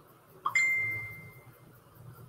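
Computer alert chime: a single ding about half a second in, one clear tone that fades out over about a second.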